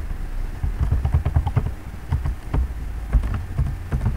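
Computer keyboard typing: a quick, irregular run of keystroke clicks over a low rumble as a password is entered.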